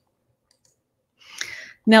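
Silence for over a second, then a short breathy hiss as the speaker draws a breath, and a woman's voice starting a word at the very end.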